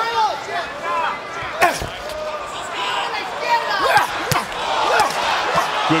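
Boxing gloves landing punches during a flurry in the ring, a few sharp smacks heard over a noisy arena crowd: one near two seconds in and two close together about four seconds in. Shouting voices from ringside and the crowd run underneath.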